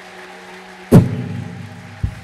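Church keyboard music with a held low note, and a single loud thump about halfway through, much louder than the music, at the moment the woman collapses to the floor.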